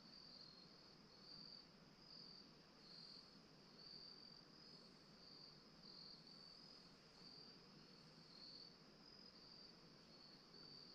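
Faint, steady trilling of crickets: a continuous high-pitched chorus that swells and fades a little about once a second, over a low background hiss.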